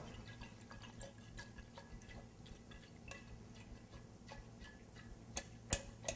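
Faint, irregular clinks of a stirrer against the side of a glass jar as a liquid is stirred, with two slightly louder taps near the end.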